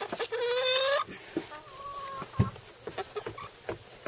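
Chickens in a run calling: one drawn-out, slightly rising hen call in the first second, then a fainter call about two seconds in, with a short knock just after it.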